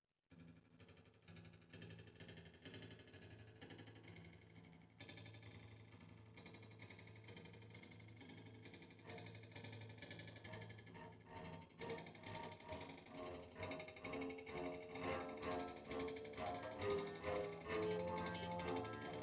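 Live amplified music from a small band: electric bass holding a low drone, with electric guitar through effects pedals and keyboard layered over it. It starts abruptly just after the opening and builds steadily louder and denser.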